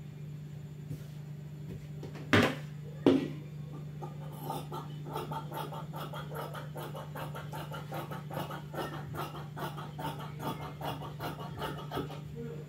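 Two sharp knocks, then large fabric scissors cutting through cloth in a quick, even run of snips, several a second, as a strip is cut off along the edge of the fabric.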